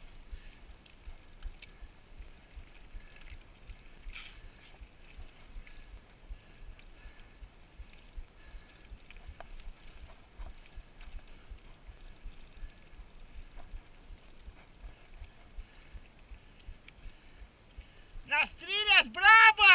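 Mountain bike rolling down a dirt road, heard from the handlebars: a low, uneven rumble of tyres and wind on the microphone, with scattered light clicks and rattles from the bike and the gear strapped to the bars. A sharper knock comes about four seconds in.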